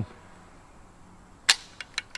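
The hammer of a Chinese Polytech AKS-762 rifle falling on an empty chamber: one sharp click about a second and a half in, followed by a few fainter clicks. The rifle has run dry without warning, because an AK's bolt does not lock back on the last round.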